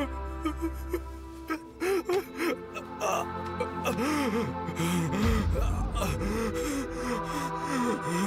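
A man sobbing and gasping in anguish, his voice bending and breaking, over sustained dramatic background music. A deep low rumble swells in the music about five seconds in.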